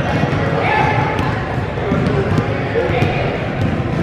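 Basketballs bouncing repeatedly on a hardwood gym floor, over a steady din of children's voices on the court.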